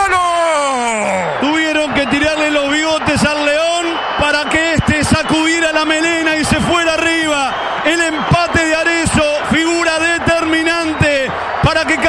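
A man's rapid, high-pitched radio football commentary, talking without a break.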